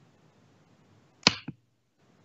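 A sharp knock about a second in, followed a quarter-second later by a smaller click, over faint background hiss.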